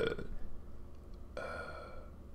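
A man's voice: a word trailing off, a pause, then a long flat hesitation sound, "euh", held steady at one pitch for the last half-second or so.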